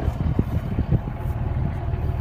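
Vehicle engine idling, a steady low rumble, with a few soft knocks about halfway through.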